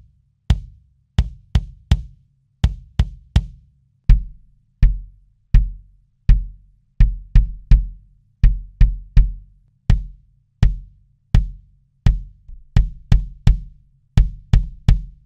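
A 20-inch Sonor kick drum played alone in a pattern of single and paired beats, heard through close microphones. First comes a boundary condenser mic inside the drum (beyerdynamic TG D71) that brings out the beater's attack, then a large-diaphragm dynamic mic at the resonant-head porthole (TG D70). From about four seconds in the beats have a much deeper low end.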